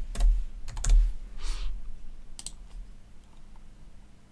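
Computer keyboard being typed on: a quick run of key clicks in the first second, a few scattered clicks a little later, then tailing off.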